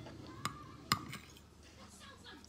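Metal fork striking a china dinner plate twice, about half a second apart, each a sharp clink with a short ring.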